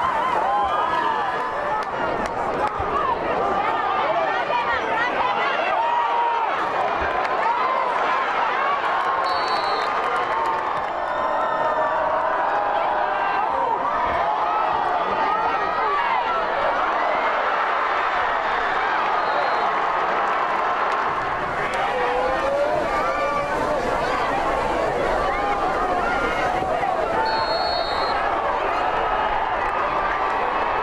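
Football stadium crowd cheering and yelling, many voices overlapping in a steady din.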